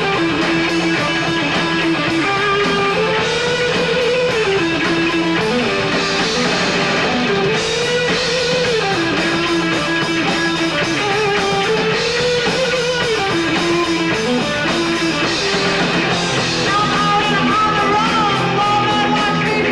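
Live rock band: an electric guitar plays a lead line with bent notes over bass and a drum kit, repeating a rising, bending phrase about every four seconds.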